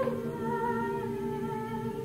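Unaccompanied choir holding sustained chords on hummed or wordless tones, several voices at once, the harmony shifting slowly.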